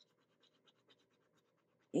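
Scratch-off coating on a paper savings-challenge card being scraped with a pen-like scratcher: a faint, quick run of short scratching strokes, about five or six a second, uncovering the hidden number.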